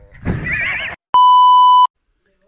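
A horse's whinny with a quavering pitch, just under a second long, then after a brief gap a steady high-pitched beep of about three-quarters of a second, like a censor bleep.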